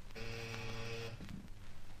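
An electric buzzer sounds once, a steady buzzing tone lasting about a second. It is a call signal to another room.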